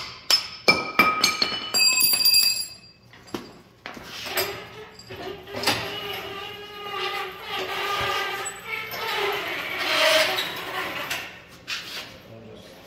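Hammer blows on the steel quick hitch of a John Deere three-point hitch, sharp ringing metal clangs about twice a second for the first couple of seconds. Then several seconds of a wavering, pitched squeak or groan.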